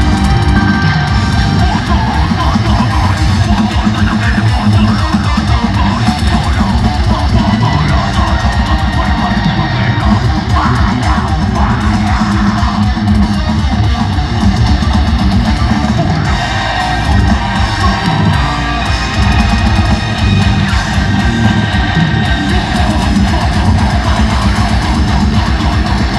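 Deathcore band playing live through a concert PA: distorted electric guitars and bass over dense, fast drumming, continuous and loud.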